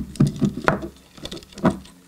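Handling of a miniature replica camera and its strap: several small, sharp clicks and taps of the metal strap rings and clips against the camera body, with light knocks on the wooden table beneath.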